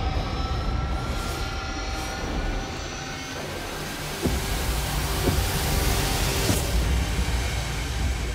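Trailer-style soundtrack: music under a dense, steady rumble of sound effects, with a faint rising whine in the first two seconds and two sharp hits about four and five seconds in, followed by a short held tone.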